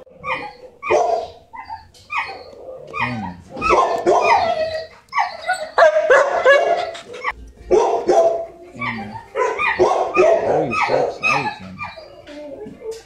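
Dogs in shelter kennels barking and yipping, a string of short barks several a second with brief pauses.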